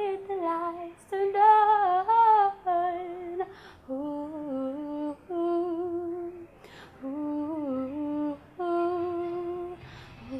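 A young woman singing alone, unaccompanied, a slow melody of held notes in short phrases with brief breaths between them. About four seconds in, the line drops lower and softer.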